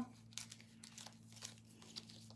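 Hebrew letter cards being shuffled by hand: faint, irregular papery flicks and rustles over a low steady hum.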